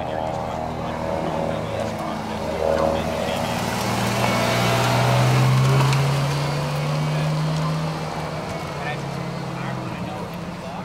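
Ferrari 458 Italia's V8 engine running steadily as the car rolls past at pit-lane speed. It is loudest as it goes by about halfway through, then eases off as the car pulls away.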